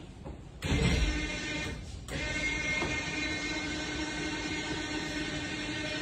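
Electric motor of a Regal LX4's power-folding arch running as the arch lowers, a steady whine that starts about half a second in and dips briefly about two seconds in.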